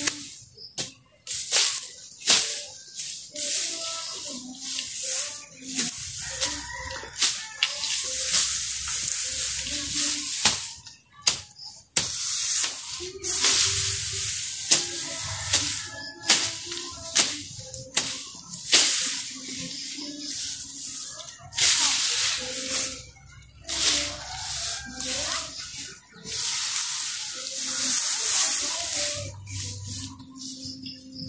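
Cut grass and weeds rustling and swishing as they are raked with a stick and pulled by hand, in many irregular bursts.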